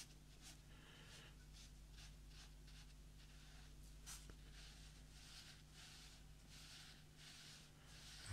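Faint, soft swishes of a synthetic squirrel-hair watercolour brush dragging wet paint down textured watercolour paper, about two strokes a second, over a steady low hum.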